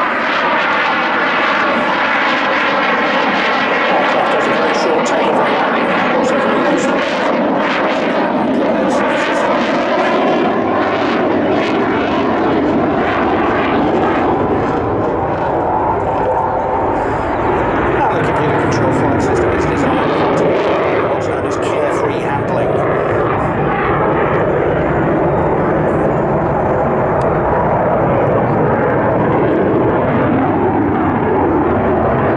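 Saab JAS 39C Gripen fighter's single Volvo RM12 turbofan engine, loud and continuous as the jet flies past and climbs away, with sweeping, falling tones through the first half.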